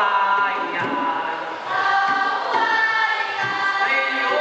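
A group of young voices singing an Amis folk song together, with long held notes and slides between pitches.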